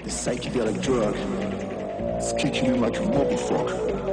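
Hardstyle music from a live set, with a voice over the track whose pitch wavers and bends.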